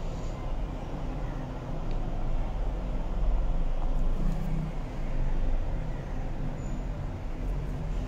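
Steady low rumbling background noise with a faint steady hum running through it.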